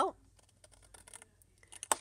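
Scissors snipping a wedge out of a white cardstock box tab. A few faint clicks, then one sharper snip just before the end.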